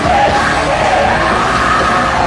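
Live heavy rock band playing loud, with the crowd close by yelling and singing along.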